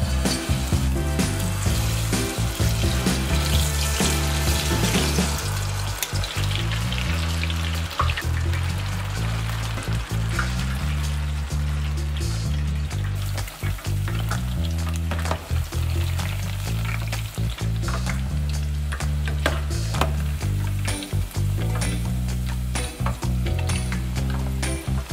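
Battered cauliflower florets deep-frying in a saucepan of hot oil, a steady sizzle and crackle, busiest in the first few seconds. Background music with a bassline plays throughout.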